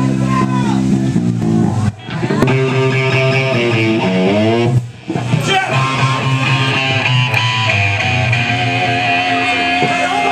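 Amplified electric guitars and bass guitar playing loud held chords that break off briefly twice, with a sliding run down in pitch about four seconds in.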